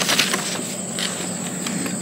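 Glossy paper brochure handled and its pages turned, giving irregular crackles and rustles, the sharpest right at the start, over a steady high-pitched whine.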